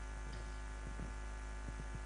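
Steady mains hum from a PA sound system, with a few faint soft knocks from the handheld microphone being moved in the hands.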